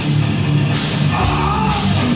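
Heavy metal band playing live and loud: a drum kit and electric guitars, with cymbal wash coming and going in roughly one-second blocks.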